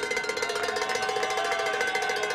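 A bell ringing rapidly and continuously at a steady pitch, many strokes a second.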